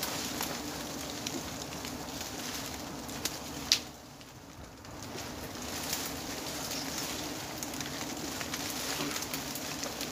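A swarm of giant honey bees buzzing as they pour off their exposed comb: a steady low hum that dips for about a second just after a sharp click near the middle, over scattered crackling.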